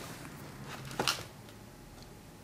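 Quiet room tone with a single brief click about a second in.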